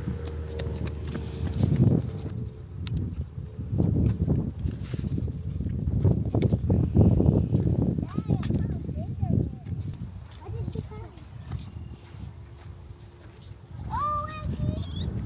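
Footsteps on soft sandy soil while walking, with wind rumbling in gusts on the microphone.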